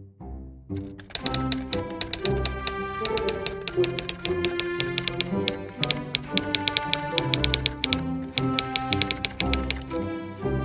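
Typewriter key clicks, fast and irregular, starting about a second in and running over background music with sustained tones.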